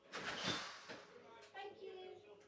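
A brief scraping rustle, about a second long, as the crafter gets up from her desk to answer the door, followed by faint speech.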